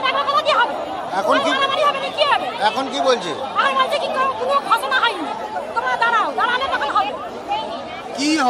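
A woman speaking continuously and animatedly, with crowd chatter behind her.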